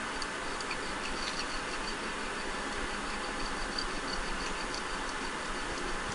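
Hacksaw cutting through PVC pipe: a steady, even sawing noise with faint, regularly spaced high ticks.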